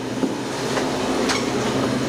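A steady mechanical hum with a few light clicks.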